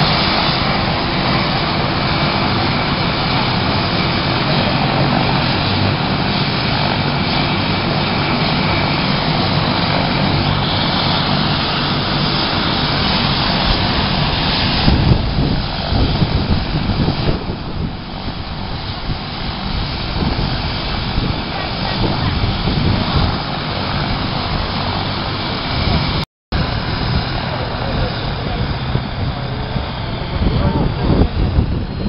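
Helicopter turbine and rotor running loudly and steadily, with a faint steady whine over the noise; the sound eases somewhat about halfway through.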